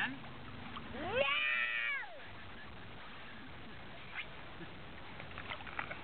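A young child's single drawn-out, high-pitched vocal cry about a second in, rising and then falling in pitch, followed by light splashing as she moves through pool water.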